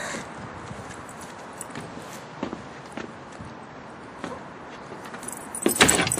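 Light metallic jingling with soft footsteps, from a dog walking at heel on a paved path. A short, louder burst of high-pitched sound comes near the end.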